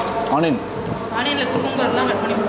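Two short snatches of speech over a steady low hum.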